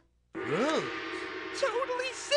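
Wordless cartoon voice sounds over background music: a brief silence, then a vocal sound that rises and falls in pitch, followed by wavering vocalizing near the end.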